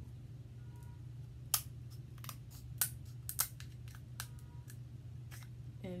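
Kitchen scissors cutting into a snow crab leg's shell: a string of sharp snips and cracks, the loudest about one and a half seconds in and around three and a half seconds. A steady low hum runs underneath.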